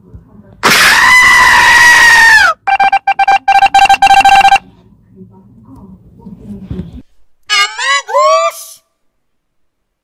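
A loud, drawn-out scream that drops in pitch as it cuts off, then a steady tone chopped into rapid stutters, and near the end a brief run of high, sliding squeaky vocal sounds.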